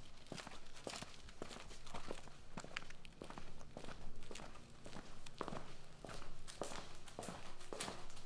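Footsteps of a person walking at a steady pace on hard ground, about two steps a second.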